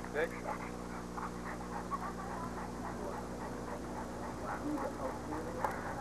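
A Rottweiler panting softly, over faint background voices and a steady low hum.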